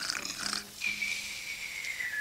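A cartoon snoring sound effect for a sleeping snake. It opens with a short, rough snore, and from just under a second in a long whistle slowly falls in pitch on the out-breath.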